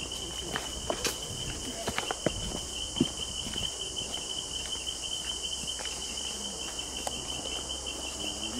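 Footsteps of several hikers on a stone-paved forest path, a scatter of scuffs and knocks that thin out after the first few seconds, over a steady high-pitched drone of insects.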